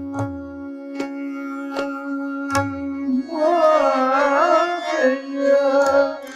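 Hindustani classical vocal music: a steady tanpura drone throughout, tabla strokes in the first half with the bass drum's pitch bending, then a male voice singing a long, wavering melodic phrase from about three seconds in.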